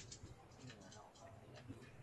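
Near silence on a video-call line: a faint low hum with a few faint ticks and a faint voice.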